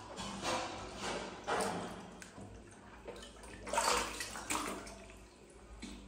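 Water sloshing and splashing in a plastic baby bathtub as a small monkey paddles through it, in uneven surges with the biggest splash about four seconds in.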